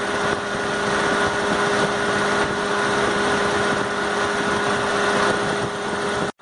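A 1.7-litre car engine running steadily and cold, with its thermostat removed and its water pump circulating coolant: an even engine hum with a constant whine in it.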